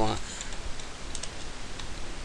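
Computer keyboard being typed on: a handful of faint, separate key clicks as a short word is entered.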